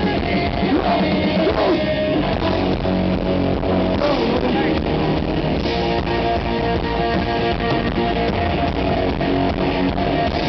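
Live hardcore punk band playing loud and without a break: electric guitars, bass and drum kit through a festival PA, recorded from within the crowd.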